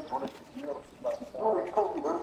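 A person's voice, speaking softly with words not made out, growing louder in the second half.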